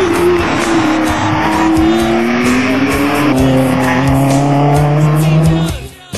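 Porsche 911 rally car's flat-six engine accelerating hard in one long pull, its pitch rising steadily for several seconds. It cuts off abruptly just before the end.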